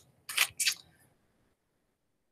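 Two brief scuffs of a paper sheet being handled, about a third of a second apart, then silence.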